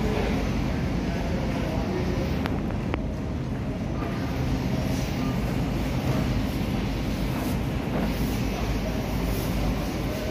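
Steady low rumble and hum of supermarket background noise, with two light clicks about two and a half and three seconds in.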